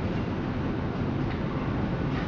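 Interior running noise of a Berlin U-Bahn F87 car in motion: a steady low rumble of wheels on rails and traction equipment.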